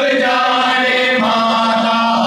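A noha, a Shia lament, chanted by male voices in long drawn-out notes, moving to a new note just after a second in.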